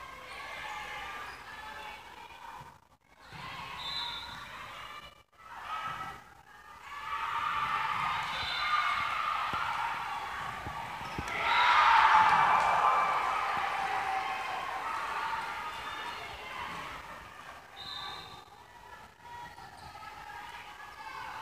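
Volleyball match in a gym: ball hits and player and spectator voices. The noise rises to a burst of cheering and yelling a little past halfway, then dies back down.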